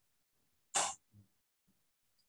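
A person clears their throat once, a short, sharp burst about three-quarters of a second in, with near silence around it.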